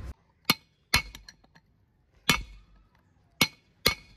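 A hammer drives a steel drift against the old rear wheel bearing in a cast-iron brake drum hub to knock the bearing out. Five sharp metallic blows with a short ring, unevenly spaced.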